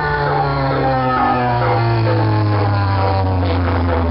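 Loud electronic dance music from a festival sound system, with heavy bass and a droning synth tone whose pitch slides slowly downward.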